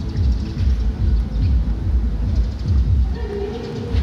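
A loud, uneven low rumble, with faint music coming in about three seconds in.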